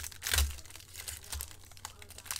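Foil trading-card pack wrapper crinkling and tearing as it is peeled open by hand, loudest about half a second in.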